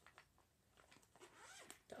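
Near silence: room tone with a few faint clicks of small plastic items being handled.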